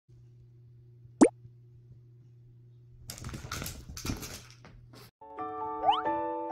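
A quick, loud rising pop about a second in, then a cat's pounce onto a fabric sofa: rustling, scuffling and a thump lasting a second or two. A piano music jingle starts near the end.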